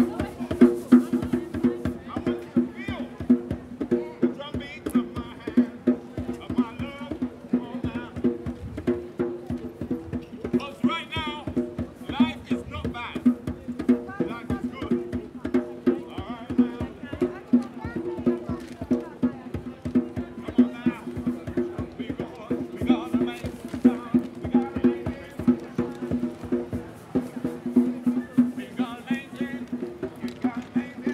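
Street buskers playing world music: a steady two-note drone runs under rapid, dense hand-drum strokes, with a wavering melody rising over it in phrases.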